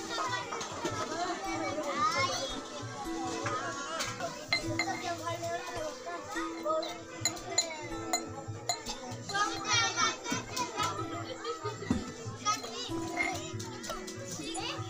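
Many children's voices chattering and calling over a bed of background music, with occasional sharp clinks, likely of steel tumblers.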